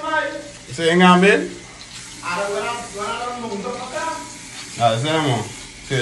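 People's voices in drawn-out, sing-song calls over a steady hiss.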